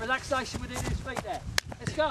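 A man's voice coaching in short, clipped phrases, with a few sharp taps, the sharpest about a second and a half in.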